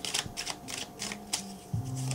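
A quick, irregular run of light clicks or taps, about seven or eight in two seconds, over faint background music.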